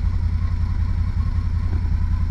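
UTV engine running steadily at low speed, a deep, rapidly pulsing rumble.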